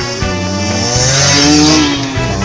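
Background music, with a dirt bike engine mixed in: it revs up, rising in pitch, and a swell of hiss builds to a peak in the second half before dropping away near the end.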